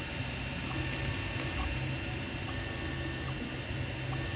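Ender 3 Pro 3D printer running as it prints its first layer: a steady whir of its cooling fans with the stepper motors humming underneath, the hum shifting in level as the print head moves.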